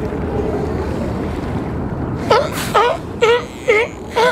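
California sea lions barking: a quick run of four barks, about two a second, starting a little past halfway, over a steady rush of wind and water.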